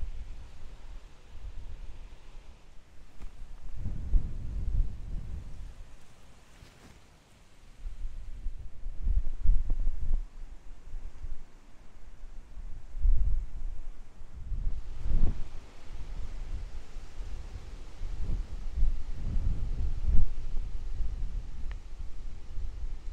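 Wind buffeting the camera's microphone: a low rumble that swells and drops in repeated uneven gusts.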